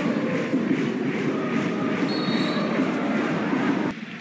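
Stadium crowd noise at a football match: a steady, dense din of many voices that fills the whole moment.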